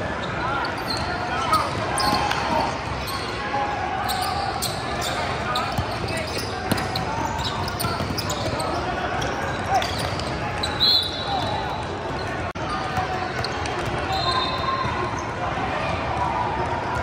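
A basketball being dribbled and bouncing on a hardwood gym floor, with players' voices carrying through a large, echoing hall. A brief high-pitched tone sounds about eleven seconds in and again near the end.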